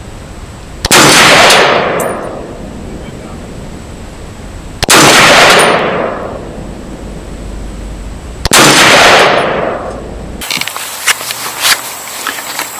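Three single rifle shots from a scoped AR-style .308 rifle with a muzzle brake, about four seconds apart. Each is a sharp crack with a long echoing tail. Near the end the shots give way to a few light clicks and handling noise.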